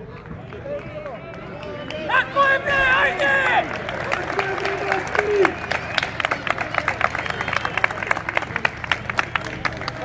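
Football spectators shouting, loudest around two to three and a half seconds in, then clapping from about five seconds in.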